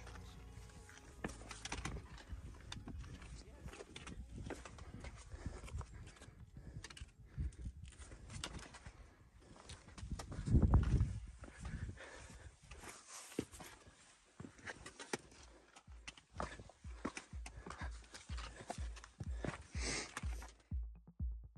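Hiking footsteps scuffing and knocking over loose granite rocks on a steep trail, with a loud gust of wind buffeting the microphone about halfway through.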